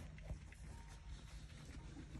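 Faint scuffling and light clicks from small puppies moving about on a blanket, over a low steady rumble.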